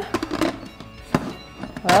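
Lid of an Instant Pot electric pressure cooker set on and twisted shut: a few light knocks, then a single sharp clunk about a second in as it seats.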